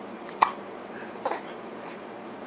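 A two-month-old baby hiccuping: two short, sharp hiccups a little under a second apart, the first louder.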